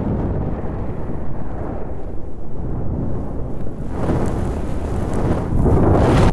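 Logo sound effect: a deep, noisy rumble like rolling thunder that swells about four seconds in and grows loudest near the end.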